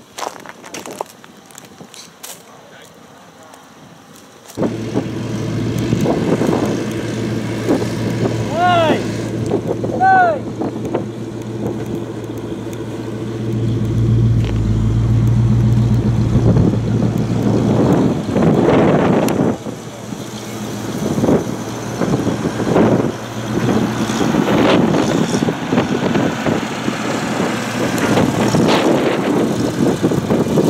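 A 1963 Flxible "Fishbowl" bus running and driving off: after a few quiet seconds the engine comes in suddenly, a steady low hum that rises and dips as the bus moves. About nine and ten seconds in there are two short rising-and-falling whistling tones.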